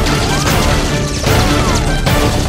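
Background action music with a few sharp shot-like impacts laid over it, the sound effects of a Nerf blaster firefight.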